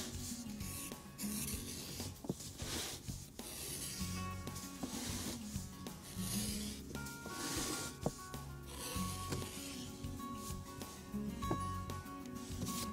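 Edge beveler shaving the edge of a vegetable-tanned leather strap in a series of short strokes, roughly one a second, each taking off a thin curl of leather. Soft background music plays under it.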